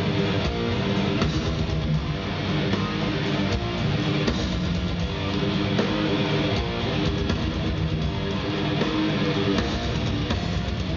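Death metal band playing live: heavy distorted electric guitar riffing over drums, with no vocals, heard from the audience.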